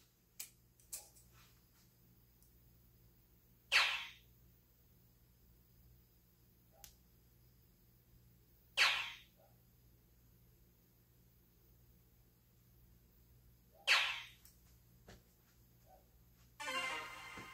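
Three soft-tip darts hitting an electronic dartboard one at a time, each a sharp hit about five seconds apart, with a few small clicks just before the first throw.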